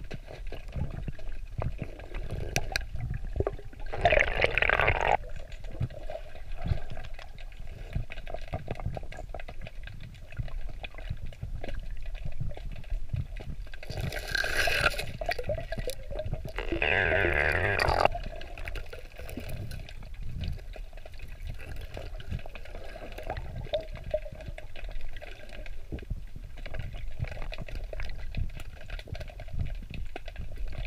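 Muffled underwater sound of a camera submerged in a river: a steady low water rumble with small crackles, and three louder rushing bursts about four, fourteen and seventeen seconds in.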